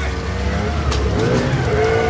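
Outboard boat motor running steadily with a low rumble and a steady hum.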